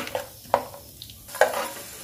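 Metal spoon stirring peanuts frying in shallow oil in a non-stick kadai: several sharp scrapes and clacks against the pan over a faint sizzle.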